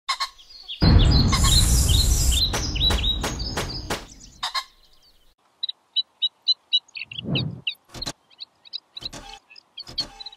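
A loud noisy rush with a low rumble and several sharp clicks for the first few seconds, dying away, then a bird chirping in a quick run of short high calls, about three a second.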